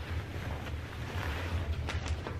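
Soft rustling of fabric as a pair of basketball shorts is shaken out and held up, over a low steady hum, with a short tap near the end.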